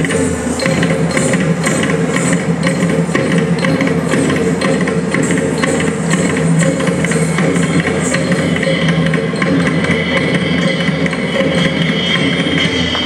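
Live Carnatic ensemble music: mridangam and nattuvangam cymbal strokes keep a steady rhythm under a sustained melody line. A long high note is held near the end.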